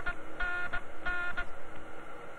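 Spaceship radio call signal: a horn-like electronic buzz sounding in short pulses of about a third of a second, twice in a row, over a faint steady hum. It announces an incoming radio call.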